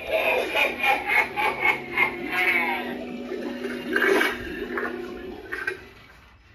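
Cauldron Creep animatronic playing its bubbling-cauldron sound effect through its built-in speaker, over a steady low drone, fading near the end.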